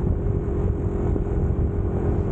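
Yamaha Mio 125 scooter's single-cylinder four-stroke engine running at a steady cruise, heard from the rider's position with wind and road rumble.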